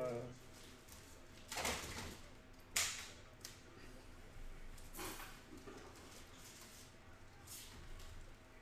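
Faint handling noise from trading cards held and shifted in the hands: four short rustles, the sharpest about three seconds in.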